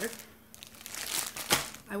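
Plastic zip-top bag crinkling as it is handled, with one sharp, louder knock about one and a half seconds in.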